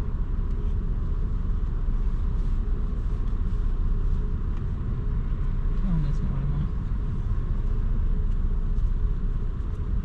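Steady low rumble of a car idling, heard from inside the cabin, with faint steady hums above it. A short falling vocal sound, like a brief murmur, comes about six seconds in.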